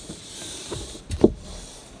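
A cloth rag wiping along a rubber RV slide seal that has just been sprayed with conditioner, a soft rubbing hiss, then a few knocks about a second in, the loudest a sharp knock just after.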